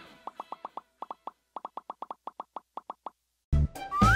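A quick run of short cartoon pop sound effects, about seven a second, in two runs with a brief gap between them. Near the end, bouncy children's music starts up loudly with a rising whistle-like glide.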